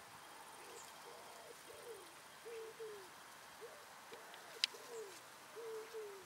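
A bird cooing: a run of short, low, arching notes repeated irregularly, with a single sharp click about four and a half seconds in.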